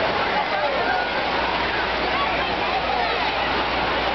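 Steady rush of churning, foaming water in a wave pool, with many people's voices and shouts mixed in.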